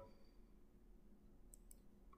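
Near silence with a few faint computer-mouse clicks about one and a half seconds in.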